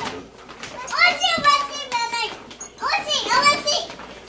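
Young children's high-pitched, excited vocalizing without clear words, in two bursts: about a second in and again about three seconds in.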